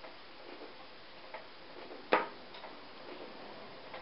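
A few faint clicks and one sharp click about halfway through, from a crochet hook being set down on the table, over a steady low hiss.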